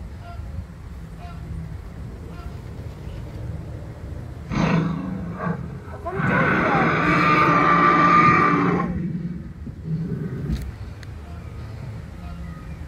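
Recorded dinosaur roar played through a loudspeaker at an animatronic dinosaur display: a short growl about four and a half seconds in, then a long, loud roar lasting about three seconds.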